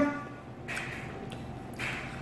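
Quiet room sound with two short, soft noises, the second as a man bites into a crispy fried catfish nugget.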